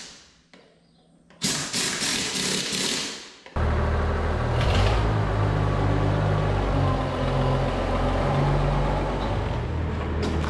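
A short stretch of hissing, like compressed air from a hose. Then, from about three and a half seconds in, the Oliver 1850 tractor's engine runs steadily at a low, even speed.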